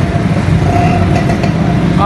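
Street traffic noise: a motor vehicle's engine running close by with a steady low rumble, and a thin steady tone above it.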